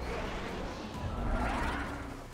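Jet aircraft rushing past: a noisy roar that swells to a peak near the end, with a faint rising whine, over a steady low rumble.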